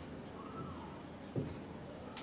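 Faint sound of a marker writing on a whiteboard, with one soft knock late on.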